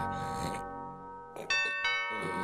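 Two-note ding-dong doorbell chime: the previous ring fades out, then the bell is rung again about one and a half seconds in.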